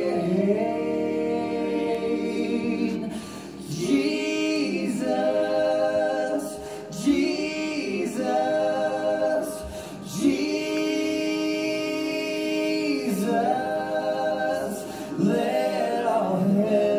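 Several voices singing a slow worship song in harmony, in long held phrases with short breaks between them.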